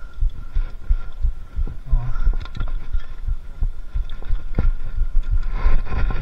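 Mountain bike knocking and rattling over a rough forest trail at slow climbing speed, picked up by a camera on the handlebar: irregular low thumps with sharp clicks, getting busier near the end.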